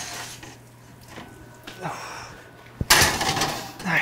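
Oven door and a metal baking sheet being handled: quiet shuffling, then a sharp metal knock about three seconds in, followed by about a second of scraping clatter as the sheet goes into the oven under the leaking springform pan.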